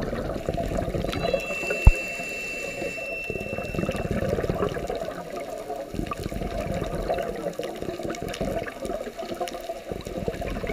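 Scuba regulator exhaust bubbles bubbling and gurgling underwater in a steady wash of water noise, with a single sharp knock about two seconds in and a faint, thin high tone for a few seconds near the start.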